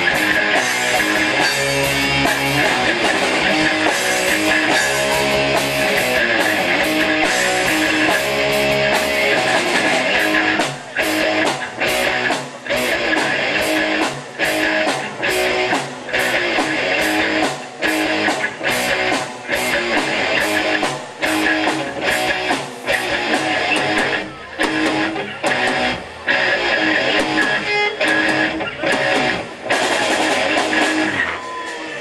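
Live rock band playing an instrumental passage on electric guitar, bass guitar and drums. From about ten seconds in the band plays in short punches separated by brief breaks.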